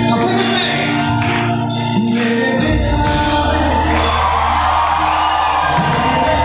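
A live band playing loudly with a singer, heavy sustained bass.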